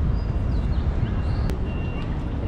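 Wind rumbling on the microphone of a handheld camera, with a few faint high chirps and a single sharp click about one and a half seconds in.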